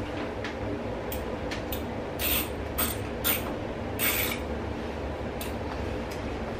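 Hand screwdriver driving a screw into a bathroom wall, a series of short, irregular scraping twists as it turns. A steady low hum runs underneath.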